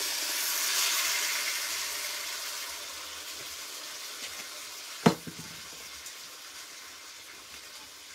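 Blended chile sauce poured into a hot clay pot, sizzling loudly at first and slowly dying down as it fries. A single sharp knock about five seconds in.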